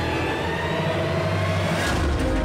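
Dramatic TV-serial background score with a rising whoosh that swells to a peak near the end.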